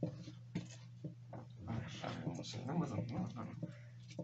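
Folded paper slips rustling and scraping as a hand rummages in a small cardboard box, under quiet talk.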